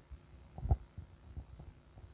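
Soft, low thuds and small knocks of handling at an audio mixer while a jack cable is being plugged into a channel input, with the loudest thud about two-thirds of a second in.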